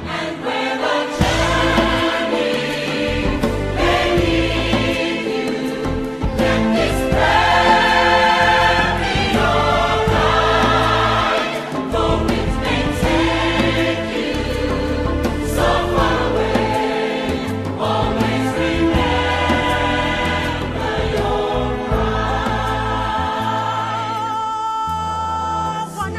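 Background music: a choir singing long, held notes over a bass line.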